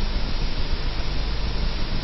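Steady hiss with a low hum underneath: the background noise of an old analogue video recording, heard in a pause between spoken phrases.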